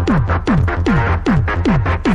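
Electronic trance music with a steady kick drum whose pitch drops on every beat, about two and a half beats a second, and crisp hi-hat strokes between.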